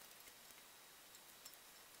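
Near silence: faint room hiss with a few light ticks from hands working at the masking tape on the painted lathe headstock.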